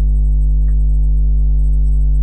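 Loud, steady electrical mains hum on the recording: an unchanging low drone with a buzzy stack of overtones above it.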